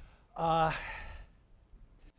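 A man's short voiced sigh, a brief steady 'ahh' about half a second in that trails off into a breathy exhale.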